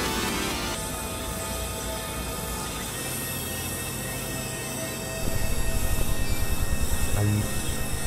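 Experimental electronic drone and noise music: dense layered synthesizer tones held over a hiss. A louder, fast low pulsing comes in about five seconds in.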